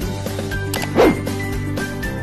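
Upbeat channel-intro music, with one short, loud, bark-like sound effect about a second in.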